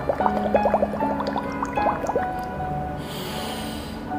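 Air blown through a drinking straw into a cup of water, bubbling in a quick run of short rising blips that thins out after about two seconds, as a straw-and-water breathing exercise. Near the end a breath is drawn in.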